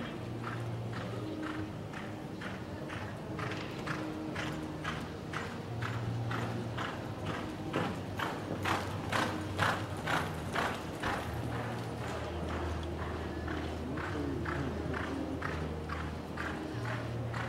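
Hoofbeats of a horse loping on soft arena dirt, an even, steady rhythm of about two to three beats a second, loudest around the middle as the horse comes toward the listener.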